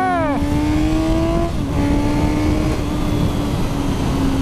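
Suzuki GSX-S1000's inline-four engine pulling hard under acceleration, its note rising, then dipping about a second and a half in and easing slowly down. Wind rushes over the rider's microphone throughout.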